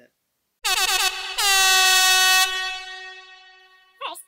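Horn sound effect: a short gliding blast, then a louder, longer blast that slides down slightly in pitch, holds, and fades away.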